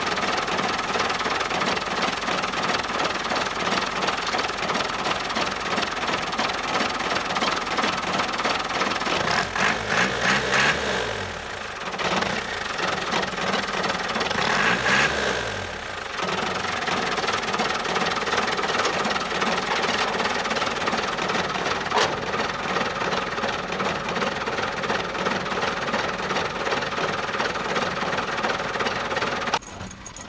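Diesel engine of a 1980 pickup truck idling with the hood open, revved up twice, about ten and fifteen seconds in, each time rising and falling back to idle.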